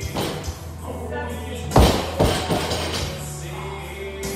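Loaded barbell dropped to the floor after a deadlift: a heavy thud a little under two seconds in, then a second thud about half a second later as it bounces.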